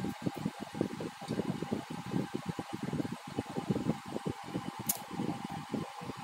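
Air from a fan buffeting the phone's microphone: an irregular, fluttering low rumble with a faint steady hiss behind it. One sharp click about five seconds in.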